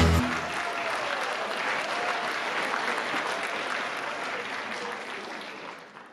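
Concert audience applauding. The song's last chord stops just after the start, and the clapping fades out near the end.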